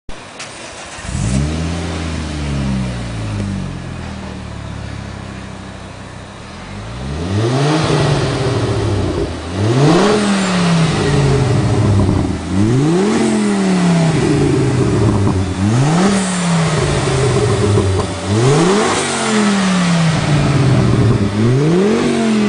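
Ford Focus ST's 2.5-litre turbocharged five-cylinder engine sounding through a Cobra Sport stainless steel cat-back exhaust with resonated centre section. It comes in about a second in with a short rise that settles to a steady idle, then from about seven seconds is revved sharply about six times, every two to three seconds, each rev climbing quickly and falling back to idle.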